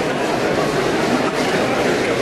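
N gauge model steam locomotive and freight wagons running along the layout's track, against steady exhibition-hall crowd chatter.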